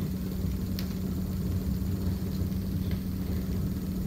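Steady low hum with a low rumble beneath it, and one faint click about a second in.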